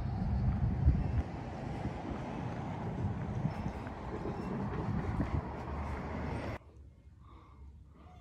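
Outdoor street ambience, a steady rushing noise with some light bumps, that cuts off suddenly about six and a half seconds in. What follows is a much quieter indoor room tone.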